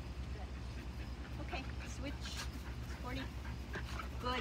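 Border collie whimpering and yipping a few times, with short high-pitched calls through the middle, over a steady low hum. The whining is that of a dog straining to hold its wait for the ball.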